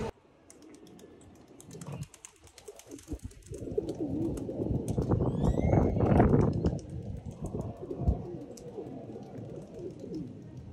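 Feral pigeons cooing in low, wavering calls, loudest in the middle, with a short rising bird chirp about five and a half seconds in.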